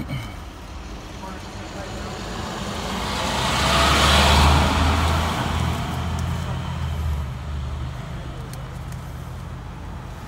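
A road vehicle passing by: its road noise swells to a peak about four seconds in and fades away by about eight seconds, over a low engine hum.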